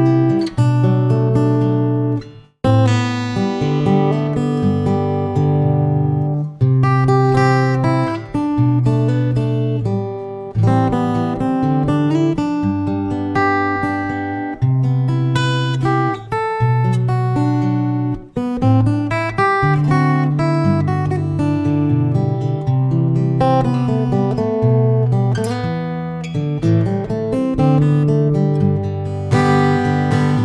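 Takamine GN11MCE all-mahogany cutaway acoustic-electric guitar played solo with the fingers, a bass line under a melody, recorded through its pickup and a microphone together. The playing breaks off briefly about two and a half seconds in.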